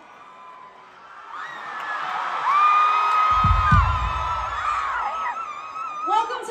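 Concert crowd screaming and cheering, with high held screams, getting louder about two seconds in. A low thump comes a little after the middle.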